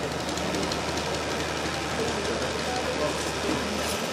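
Indistinct chatter of a gathered crowd over a steady low hum.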